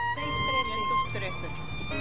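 Soft instrumental music: long, steady held notes, the pitch stepping to a new note about a second in, as a hymn introduction.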